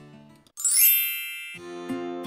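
A bright chime sound effect about half a second in: a quick upward twinkle of high ringing tones that fades out over about a second. Soft plucked-guitar background music comes back in near the end.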